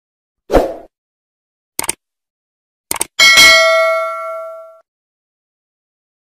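Subscribe-button animation sound effects: a short pop about half a second in, a mouse click, a quick double click, then a bright bell ding that rings out over about a second and a half.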